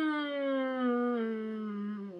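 A woman's voice holding one long hummed 'mmm' that glides slowly down in pitch, a drawn-out musing sound while she weighs what she has just read.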